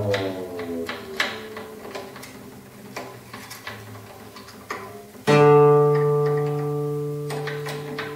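A guitar string ringing while its tuning peg is turned with a string winder, its pitch sliding down as the string is slackened, with a few light clicks from the peg and winder. About five seconds in, a string is plucked again and rings at a steady pitch, fading slowly.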